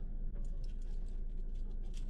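Steady low engine and road rumble heard inside a vehicle's cab as it slows down, with scattered light clicks and rattles.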